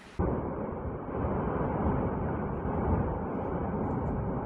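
Cumbre Vieja volcano erupting: a loud, continuous low rumble from the vent as lava fountains from the cone, starting suddenly just after the start.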